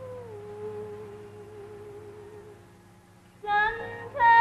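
Women's voices holding a long sung note in a gospel song, stepping down in pitch about a third of a second in and slowly fading; near the end the women come in loudly on a new note.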